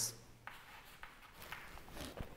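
Chalk writing on a chalkboard: short, faint, irregular scratches and taps as a formula is written out.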